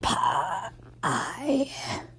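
A person's voice making two drawn-out groaning sounds with no words. The first is short, and the second starts about a second in and lasts about a second.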